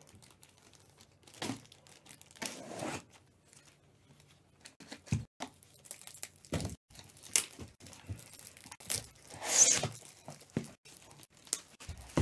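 Cardboard shipping case being torn open: packing tape ripped and cardboard flaps pulled, in a series of short, irregular tearing and crinkling sounds, the loudest near the end.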